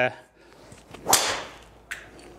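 A golf driver swung at a teed ball: a brief swish of the club into a sharp crack of the clubhead striking the ball about a second in, trailing off quickly. A faint click follows near the end.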